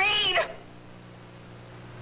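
A woman's shrill, drawn-out cry on the word "read?", breaking off about half a second in, followed by a faint steady hum.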